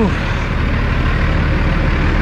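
Cummins ISX diesel engine of a 2008 Kenworth W900L semi truck running with a steady low rumble while the truck moves across the yard.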